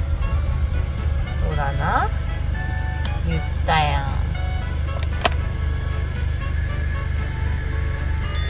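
Steady low engine and road rumble heard inside the cabin of a moving Toyota HiAce van, under background music.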